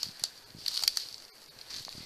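Footsteps through forest undergrowth: a few short crackles and snaps of twigs and dry litter underfoot, with branches brushing past.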